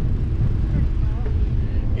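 Wind rumbling steadily on the microphone outdoors, with a faint voice briefly in the middle.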